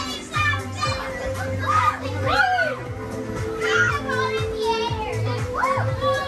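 Several children squealing and calling out while they play in an inflatable bounce house, with short high squeals that rise and fall again and again. Music plays underneath.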